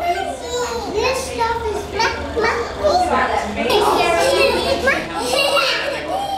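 Toddlers' high voices babbling and calling out, overlapping, with no clear words, over a faint steady low hum.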